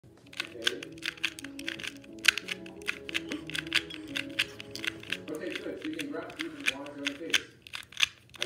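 Quick, irregular plastic clicking of a Rubik's brand 2x2 cube being turned by hand in rapid moves, with music and a voice in the background.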